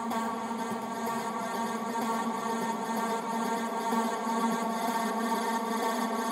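Electronic house/techno DJ mix in a breakdown: sustained synthesizer chords holding steady, with the kick drum and bass dropped out.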